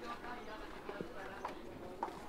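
Footsteps of people in rubber slide sandals climbing tiled stairs: a few separate slaps of the soles against the steps, with faint voices behind.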